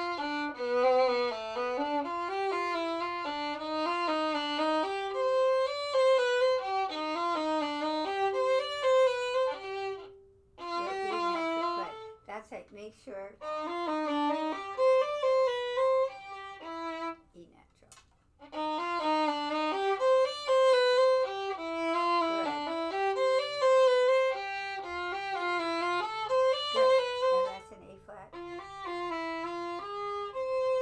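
Two violins playing together: passages in two parts, one line above the other, moving in steps. The playing stops briefly about ten seconds in and again just before eighteen seconds, then starts again.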